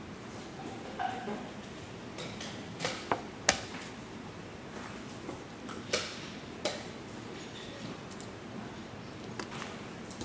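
Scattered short clicks and light knocks of wooden chess pieces being set down and a chess clock being pressed, the sharpest about three and a half seconds in, over steady room noise.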